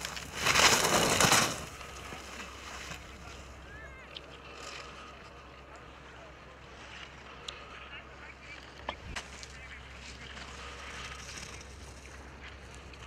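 Ski edges scraping over hard-packed snow as a giant-slalom racer carves a turn close by: a loud hiss for about a second near the start, then a fainter steady scraping as the skier moves away.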